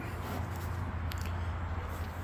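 Plastic screw cap of a quart bottle of motor oil being twisted open, with one faint click about a second in, over a steady low hum.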